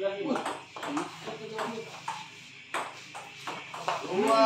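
Table tennis ball struck back and forth in a rally: a string of sharp, irregularly spaced clicks of the ball on paddles and table, with a louder hit near the end, and faint voices underneath.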